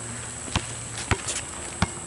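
Basketball bouncing on an asphalt court: three bounces, roughly two-thirds of a second apart.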